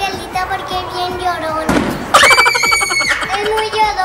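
Children's voices over background music, broken by a short burst of noise just before the middle, followed by a loud, high-pitched squeal held for about a second.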